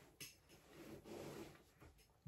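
Near silence: faint room tone, with a light click just after the start and a soft, short noise about a second in.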